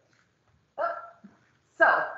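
A person's brief wordless vocal sound, short and pitched, about a second in, followed by the start of speech.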